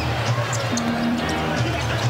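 Arena music with a steady low bass over the court noise of a live NBA basketball game.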